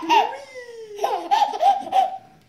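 A baby laughing in short, high-pitched peals: a burst at the start and a longer run from about halfway through, with an adult's lower voice laughing along.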